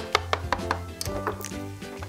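A small toy animal figure tapping on a tabletop, a run of quick, irregular light taps, over soft background music.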